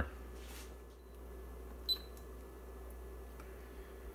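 Quiet room tone with a low steady hum from the running bench equipment, broken by one short click with a brief high beep about two seconds in.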